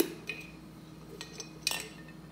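Plastic measuring scoop and hinged plastic lid knocking against an empty glass coffee carafe: a sharp clink with a brief ring at the start, a few light knocks, then another ringing clink near the end.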